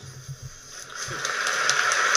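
Audience applause in the debate video playing through the computer's speakers, rising about a second in and holding steady.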